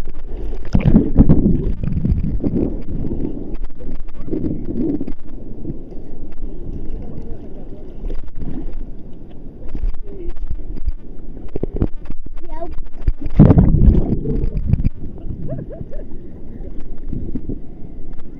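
Wind buffeting the microphone over the sound of sea water washing, a loud, steady rumble with stronger gusts about a second in and again around two-thirds of the way through.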